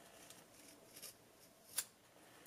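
Scissors snipping through a folded square of fabric, cutting a rounded edge: a few faint snips, the clearest just before the end.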